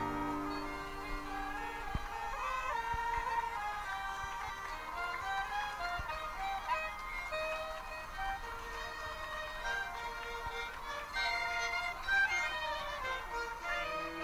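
A live traditional folk band playing a tune together: fiddles, clarinets and goatskin bagpipes of the kozioł type sounding at once.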